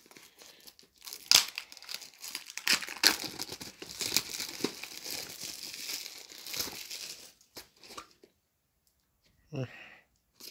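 Plastic shrink-wrap being peeled and torn off a cardboard DVD box set: a dense crinkling and tearing with a few sharp crackles, which stops about three-quarters of the way through.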